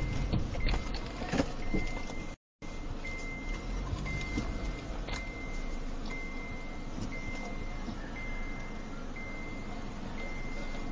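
A car's warning chime beeping, a single high tone repeating about once a second, over the steady rumble of the car's engine and road noise. A few sharp knocks come in the first two seconds, and the sound drops out briefly a couple of seconds in.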